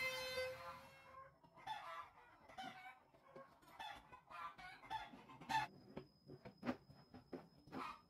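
Chickens clucking in short, broken calls, after the fading end of a long rooster crow in the first second. Near the end come a few sharp clicks and a faint, steady high whine.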